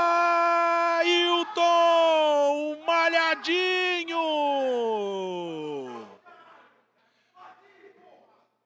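A man's long celebratory yell, held on one high pitch with a few short breaks, then sliding down in pitch and trailing off about six seconds in.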